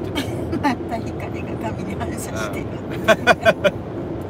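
A man laughing: four quick, loud 'ha' pulses near the end, over the steady low road noise heard inside a moving car's cabin.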